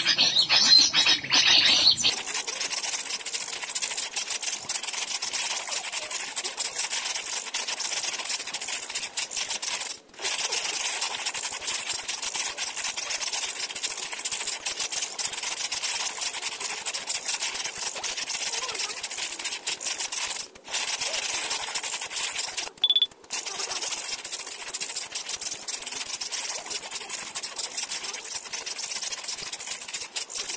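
Recorded agitated chatter of a sooty-headed bulbul (kutilang) played loud through a phone speaker as a lure call: a dense, harsh, rapid chattering. It breaks off briefly about ten seconds in, about twenty seconds in and again a little later, like a looping recording.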